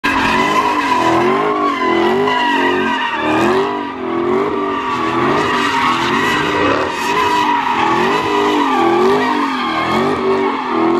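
A car doing donuts: rear tyres squealing continuously as they spin on the pavement, while the engine revs up and down about twice a second under hard throttle.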